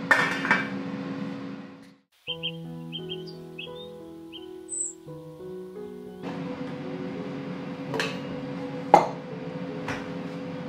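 A glass lid clinks onto a steel pan at the start. About two seconds in, the sound cuts to a short stretch of soft music with high chirps. Then a steady kitchen hum returns, with two sharp knocks near the end.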